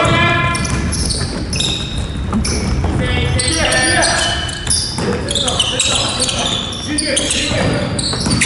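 Basketball being dribbled on a wooden gym floor during live play, with players' shoes squeaking and players calling out.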